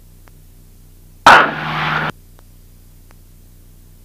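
A burst of static through the aircraft's headset intercom audio, cutting in loud and stopping abruptly after less than a second, over a faint steady hum.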